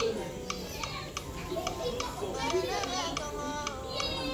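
Several people chattering, children's voices among them, over background music with a steady beat.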